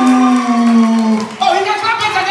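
A man's drawn-out call through a PA microphone, held for over a second and sliding down in pitch, then breaking into shorter shouted voice sounds.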